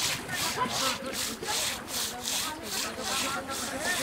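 Rhythmic scrubbing of an elephant's wet hide, rough scratchy strokes about two and a half a second.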